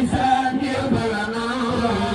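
Chanted religious singing: a voice holds long, drawn-out notes in a slow melody that bends up and down.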